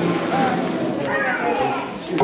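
Indistinct chatter of adults and children talking in a large hall, with no words standing out.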